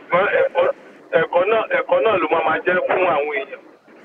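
Speech only: a man talking, his voice thin and cut off in the highs as over a phone line.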